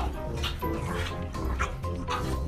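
Background music with a beat, over which a French bulldog barks.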